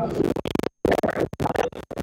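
Choppy, glitching soundtrack: short fragments of voices and room noise chopped up and cut off abruptly several times, giving a stuttering, scratch-like sound.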